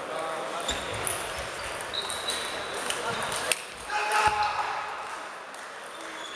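Table tennis rally: the ball clicks sharply off the bats and the table several times, with voices in the hall behind.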